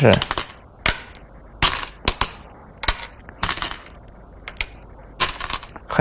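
Go stones clicking sharply onto the board as a variation is laid out move by move: about ten separate clacks at uneven intervals.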